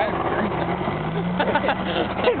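A truck engine running steadily, its hum rising slightly in pitch, with people talking in the background.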